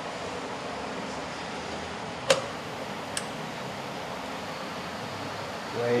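Steady room hum with a faint steady tone, broken by one sharp click about two seconds in and a fainter click about a second later.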